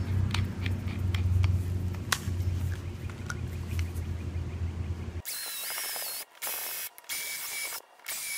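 A steady low hum for about the first five seconds. Then a cordless drill with a small hole saw bores the latch hole through a door-lock jig into the edge of a door: a high whine that rises and falls in pitch, cut off briefly a few times.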